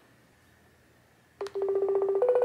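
Near silence, then about one and a half seconds in a smartphone video-call app starts its buzzy electronic calling tone through the phone's speaker.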